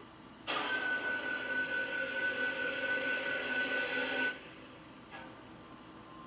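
Horror trailer sound effect heard through computer speakers: a loud, harsh sustained screech with a steady high whine. It starts about half a second in and cuts off suddenly about four seconds later.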